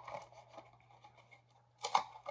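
Faint rustling and scratching as a hair-dye box and its contents are handled, with a brief louder rustle near the end.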